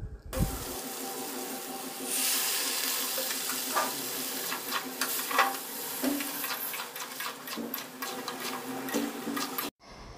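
Water poured into a hot kadai of frying curry, hissing and sizzling, with a metal spatula scraping and clinking against the pan as it is stirred.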